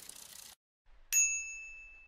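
A single bright bell-like ding about a second in, its ringing fading out over about a second. Before it, a short hissing shimmer stops about half a second in.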